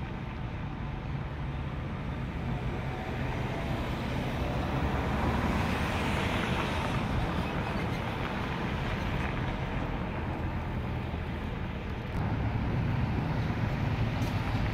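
Road traffic noise: a steady rush of passing cars, swelling as a vehicle goes by around the middle and easing off after.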